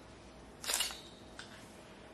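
Hair-cutting scissors closing once in a sharp snip with a brief metallic ring, about two-thirds of a second in, followed by a fainter click about half a second later.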